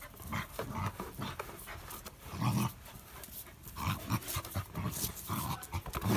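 A dachshund breathing hard and snuffling close up as it noses a basketball along, in short irregular puffs, with soft scuffs and taps of the ball on the paving.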